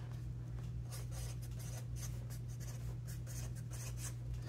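Sharpie felt-tip marker writing on paper: a quick run of short strokes, over a steady low hum.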